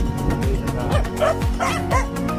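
A dog barking a few short yips in the second half, over background music with a steady beat.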